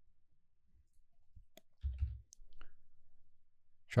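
Faint computer mouse clicks, a few between about one and a half and three seconds in, with a short low thump about two seconds in.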